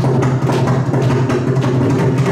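Mridangam, the double-headed barrel drum of Carnatic music, played in a quick, dense run of strokes over a steady low drone.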